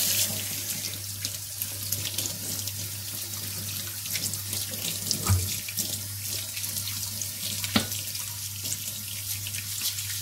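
Kitchen tap running steadily into a stainless-steel sink as hands turn and rub fresh potatoes under the stream. Two brief knocks break through, about halfway and again near the end.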